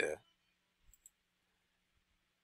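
Computer mouse double-clicked: two faint quick clicks about a second in, over a faint steady low hum.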